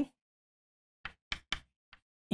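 Chalk striking and tapping on a chalkboard while writing: four short, sharp clicks in the second half, starting about a second in.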